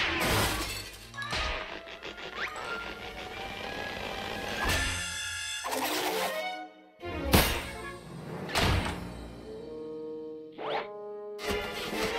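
Cartoon underscore music punctuated by slapstick sound effects: a string of crashes and impacts, the loudest about seven seconds in, and a quick rising glide near the end.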